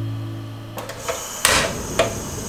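Background guitar music fading out. Then a portable gas stove's control knob is turned: a few clicks, a short hiss about halfway through, and another click near the end.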